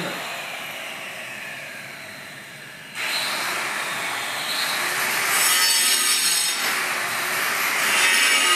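A steady rasping, scraping noise, like something rough being rubbed or scraped. It fades over the first three seconds, then starts again louder and suddenly about three seconds in.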